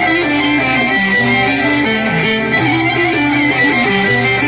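Live amplified Greek folk band playing an instrumental passage between sung verses: a stepping melody with plucked strings over a steady bass line, at a steady loud level.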